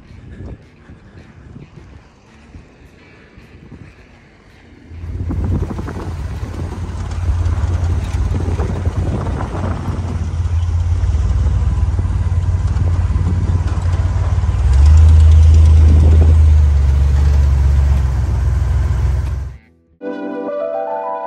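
Willys CJ2A Jeep's four-cylinder flathead engine under way on a sandy trail, with a steady rushing noise over it. It comes in loud about five seconds in after a quieter start, grows louder about fifteen seconds in, and cuts off suddenly just before the end.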